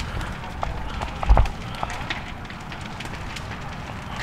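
A fully involved house fire crackling, with scattered sharp pops over a low rumble. A single heavy low thump comes about a second and a quarter in.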